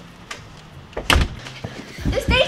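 A front door being shut with a thud about a second in, with a few lighter knocks around it.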